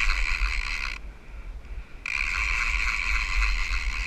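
Fishing reel's clicker ratchet buzzing steadily as line is pulled off it, the sign of a big fish running with the bait. The buzz stops about a second in and starts again a second later.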